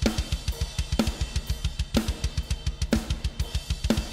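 Roland TD-17KVX2 electronic drum kit triggering EZdrummer 3 Death Metal EZX drum samples: a steady run of fast kick drum strokes, about eight a second, with a heavier snare-and-cymbal hit about once a second over ringing cymbals.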